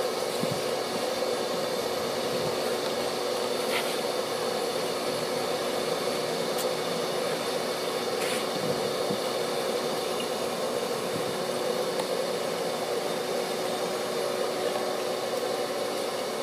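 Bee vacuum running steadily, a constant hum and rush of air, as its hose sucks a honeybee swarm off the wall.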